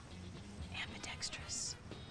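Soft whispered speech with a few hissing 's' sounds about halfway through, over a low steady drone.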